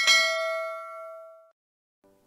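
A single bell ding, the notification-bell chime of a subscribe animation, struck once and ringing out as it fades over about a second and a half.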